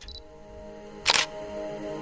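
Logo-sting sound design: a single camera-shutter click about a second in, over a sustained synth music chord that swells and holds.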